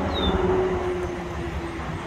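Steady low hum of passing road traffic, with a brief high, falling chirp just after the start.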